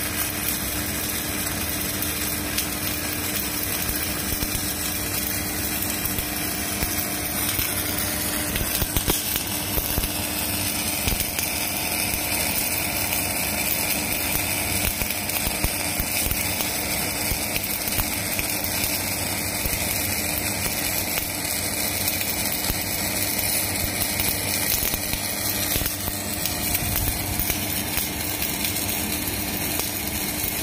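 Electric arc welding a vertical (3F) fillet test weld on steel plate: a steady crackling hiss from the arc, with a low steady hum underneath.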